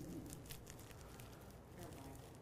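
Faint, scattered crinkles of a hard-candy wrapper being worked open by hand.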